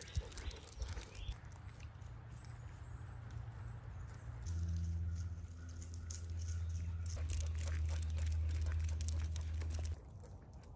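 Footsteps and two dogs' paws, claws and collar tags clicking and rattling on a paved path as they walk on the leash. A low steady hum comes in about halfway and carries on.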